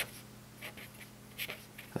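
Marker pen writing on paper: a few faint, short strokes.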